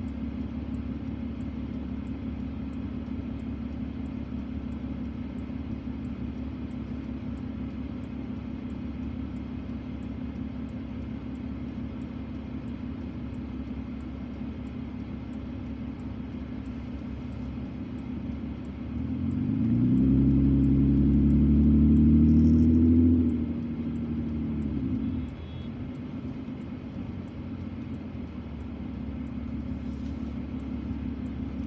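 Car engine heard from inside the cabin: a steady low idle hum, then about two-thirds of the way in it revs up with a rising pitch for about four seconds as the car pulls away from the stop, before the pitch drops back and the engine settles.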